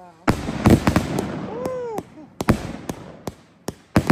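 A 49-shot, 500-gram consumer firework cake (MTK Skull Crusher) firing shot after shot: a rapid, irregular string of sharp bangs, roughly three a second, from the tubes launching and the shells bursting overhead, with a short lull about two seconds in.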